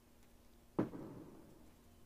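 A single dull thump about 0.8 s in, fading out over about half a second.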